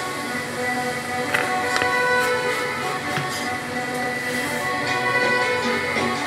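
Background music from a radio, with a few short clicks about a second and a half to two seconds in.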